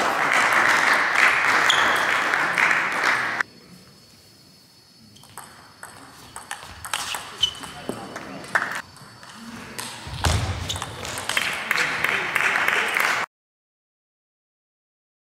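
Table tennis ball clicking off bats and the table in a rally, with loud voices shouting for the first few seconds. All sound cuts off suddenly near the end.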